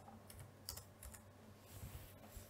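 Near silence with a few faint computer-keyboard clicks, the clearest a little under a second in.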